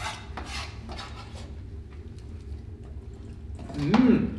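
Light kitchen handling at a table: a few faint clicks and rustles of food and utensils in the first second, then mostly a steady low hum.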